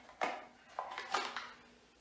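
A metal spoon clinking and scraping against a plastic tub: three short sharp clicks, the first a fraction of a second in.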